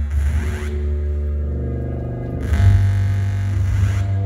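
Live band music: a heavy, steady bass with layered sustained tones above it. It grows fuller and louder about two and a half seconds in.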